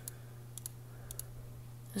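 Computer mouse clicking, a quick press-and-release pair about every half second as menu options are picked.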